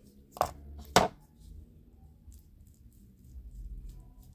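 Two sharp knocks about half a second apart, the second louder, as hard plastic hair-dye tools (comb, tint brush) are put down and picked up, followed by faint handling sounds.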